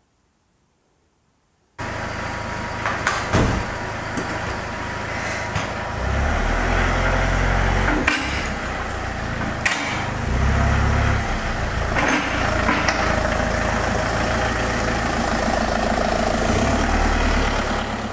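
Citroën Xsara Picasso's engine running in a workshop, starting suddenly about two seconds in, with the revs rising and falling a few times and a few sharp clicks over the top.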